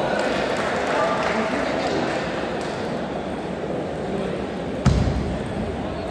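Table tennis rally: the ball clicking off the paddles and the table over a steady background of voices echoing in a large hall. A single loud, low thump about five seconds in.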